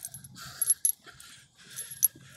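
Small loose metal pieces jingling: a few short, light, high-pitched clinks spread through the moment, as if shaken by walking.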